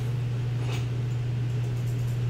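Steady low hum with a faint hiss of room noise, and one faint click just under a second in.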